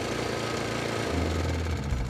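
Toro TimeMaster's Briggs & Stratton 223cc OHV engine running steadily with the blades disengaged.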